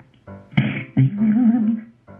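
Music with a singing voice in short phrases; in the second half one note is held and wavers in pitch.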